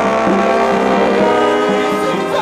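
A brass band of trombones and saxophones playing together, holding long sustained notes.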